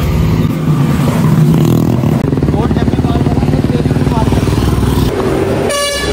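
A motor vehicle's engine running close by on the road, with an even, rapid pulsing, then a short horn toot near the end.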